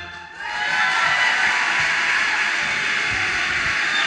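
Audience applause after an a cappella song's final chord, swelling in within about the first half second and then holding steady.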